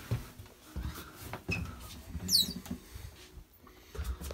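Scattered knocks, rustles and low thuds of someone moving and handling things in a small cabin, with one short, high squeak falling in pitch a little over two seconds in.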